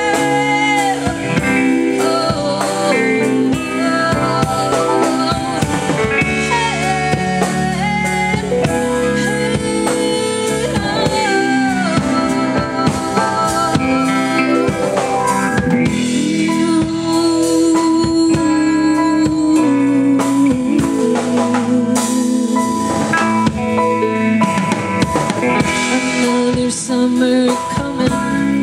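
Live band playing a song: a woman singing lead over a drum kit, electric guitar, electric bass and keyboard.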